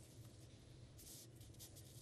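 Near silence: a faint low hum and hiss with a few soft ticks.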